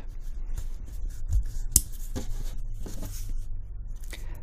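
Windage knob of a Magpul MBUS Pro steel rear sight being turned by hand: a run of small, irregular detent clicks, the positive click adjustment, with one sharper click a little before the middle, mixed with light handling of the sight.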